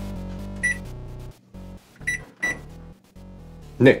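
Microwave oven keypad beeping three times as a cooking time is keyed in: one short high beep about a second in, then two in quick succession past the two-second mark, over background music.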